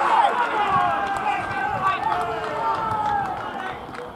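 Several men shouting and calling over one another during play on a football pitch, fading near the end.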